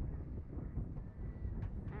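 Wind rumbling on the action camera's microphone.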